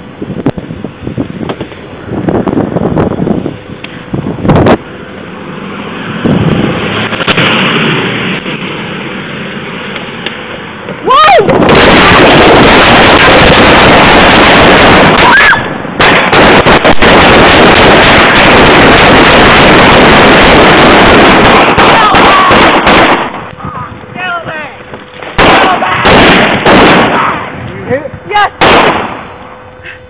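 Heavy close-range gunfire, including an AK-47 rifle, so loud that it overloads the recording. From about eleven seconds in it becomes a continuous distorted blast of noise lasting about twelve seconds, followed by several more separate loud bursts near the end.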